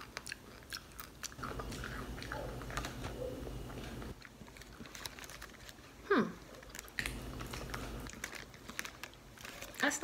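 A person chewing a hard, rock-like lump of edible clay, with faint crunching clicks. About six seconds in there is a brief hum that falls in pitch.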